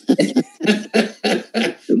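A man laughing hard in a string of short, breathy bursts, about four a second.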